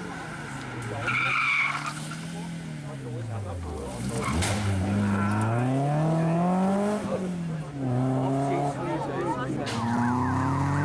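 BMW E30 rally car at speed on a tarmac stage: the engine note falls as it slows for a corner, then climbs hard through the gears, dropping at a gear change about seven seconds in and again near the end. A brief high squeal comes about a second in.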